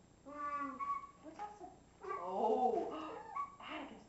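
A toddler's wordless cooing vocal sounds in several short stretches, the pitch sliding up and down.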